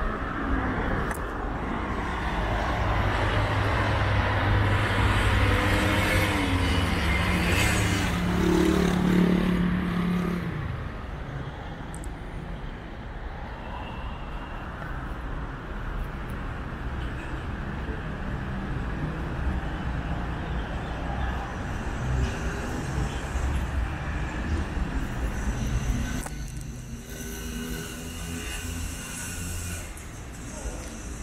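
A motor vehicle's engine running close by over city traffic noise, loudest for the first ten seconds or so and then falling away. After that comes a steady wash of street traffic.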